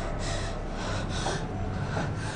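A woman breathing heavily and audibly, with about one breath a second.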